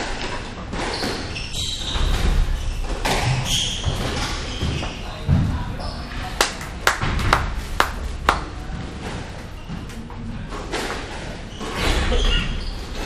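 Squash ball being struck by rackets and smacking off the court walls during a rally, with a quick run of sharp cracks in the middle, ringing in the court. Voices murmur in the background.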